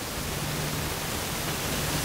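Steady background hiss with a faint low hum underneath; no distinct events.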